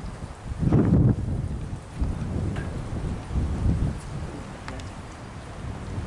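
Wind buffeting the camera's microphone: a steady low rumble with a louder surge about a second in, and a few faint ticks.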